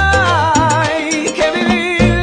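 Background music: a Latin-style song with a steady bass line and a melody with vibrato.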